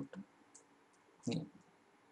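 Faint clicks of a computer keyboard as code is typed, with a brief spoken sound a little over a second in.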